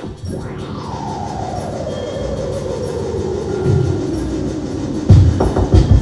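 Live electronic music: a noisy synth drone with one tone gliding slowly downward over about four seconds, then heavy kick-drum beats come in about five seconds in.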